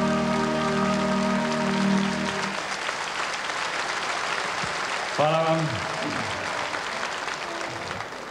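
Audience applause at the end of a song, over the orchestra's last held chord, which stops about two and a half seconds in. The clapping goes on and slowly thins, with a brief voice heard about five seconds in.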